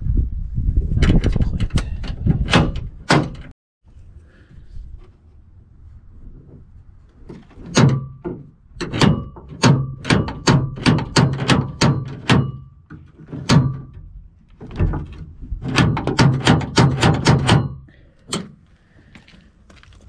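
The freshly greased door latch and handle linkage of a 1973 GMC truck's driver door, worked over and over: repeated metallic clunks and clicks in several bursts, up to about three a second.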